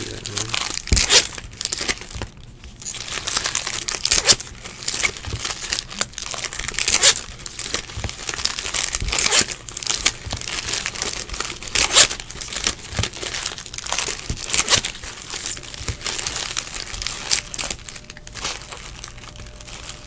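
Foil wrappers of 2018 Topps Stadium Club card packs crinkling and tearing as packs are handled and ripped open, an irregular run of crackling rustles.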